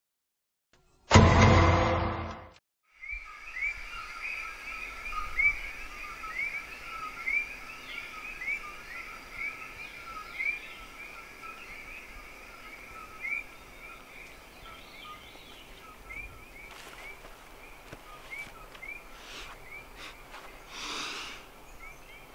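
A loud burst of sound about a second in, lasting about a second and a half, then open-air background with a bird repeating a short rising chirp about twice a second, the chirps thinning out later on.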